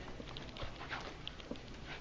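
Footsteps and the rustle of clothing and backpacks as people walk, with irregular soft knocks and a few brief high squeaks.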